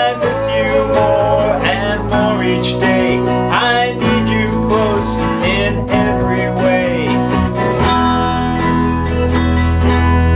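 Two men sing a 1960s pop song to strummed acoustic guitar and electronic keyboard. About eight seconds in the singing stops and the instruments hold a steady chord.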